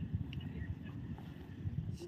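Wind rumbling and buffeting on the microphone outdoors, an uneven low rumble with no clear tone or rhythm.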